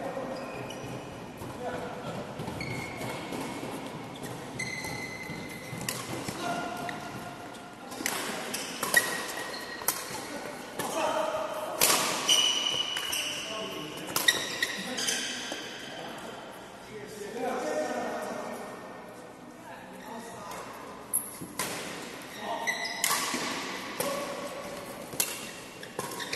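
Badminton rackets striking a shuttlecock in a doubles rally: sharp hits about a second apart, in two runs, with voices in the background.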